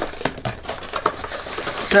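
Hands handling the cardboard box and packaging of a body massager: a run of small taps and clicks, then a short hissing rustle near the end as packaging slides or tears.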